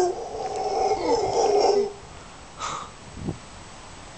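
Mantled howler monkeys calling, a loud pitched howl that stops about two seconds in; two brief faint sounds follow.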